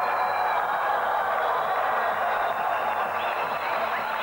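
Arena crowd hubbub: a steady mass of many voices with no single voice standing out, and a faint thin high tone running under it.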